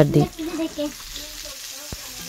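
Spiced fish fillets sizzling in oil in a nonstick frying pan, a steady hiss.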